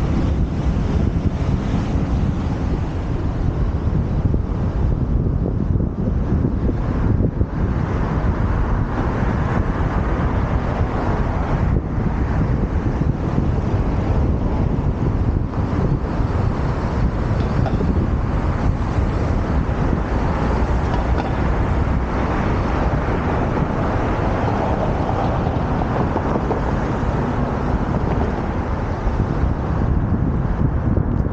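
Steady wind noise on a bicycle-borne camera's microphone while riding, a continuous low rumbling rush, with city street traffic mixed underneath.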